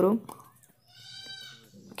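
A faint, pitched animal call about a second long, wavering like a bleat.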